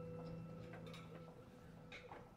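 Quiet pause: soft background music holding a sustained chord that fades out over the first second and a half, with a few faint ticks.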